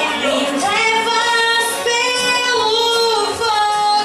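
A woman singing a worship song into a handheld microphone, holding long notes with vibrato and gliding between them.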